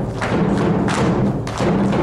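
Folk-dance music with steady low-pitched accompaniment, cut through by heavy thuds of dancers stamping on the stage floor, about three in the two seconds at an even beat.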